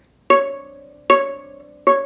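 Viola plucked pizzicato: three separate notes, the same C-sharp on the A string each time, about three quarters of a second apart. Each pluck starts sharply and rings before fading.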